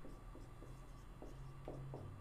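Marker pen writing on a whiteboard: a quick, irregular run of short, faint strokes as words are written out. A faint steady hum lies underneath.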